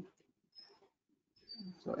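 A quiet pause in a man's speech: the end of a hummed "mm-hmm", a few faint mouth or voice sounds, then he starts talking again near the end.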